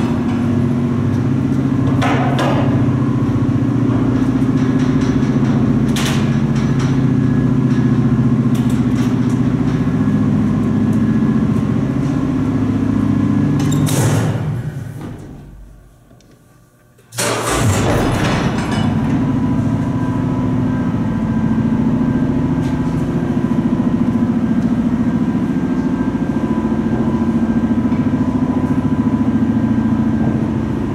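Vintage Otis freight traction elevator running: a steady, loud mechanical hum with a few sharp clicks. About fourteen seconds in it winds down and stops, and after a short quiet it starts up again with a sudden onset and runs steadily.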